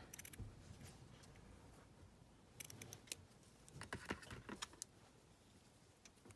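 Scissors snipping through a ribbon to trim its end: a few faint, sharp snips, one right at the start and a few more around the middle.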